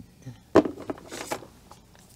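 Alcohol marker and colouring-book paper being handled: a sharp click about half a second in, then a few fainter short scratches.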